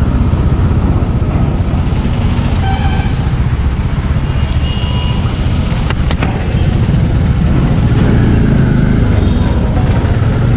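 Single-cylinder Yamaha FZ 250 motorcycle engine running at low speed, heard from the rider's helmet or bike-mounted camera with a steady low rumble of engine and wind. Two brief horn toots from surrounding traffic come about three and five seconds in.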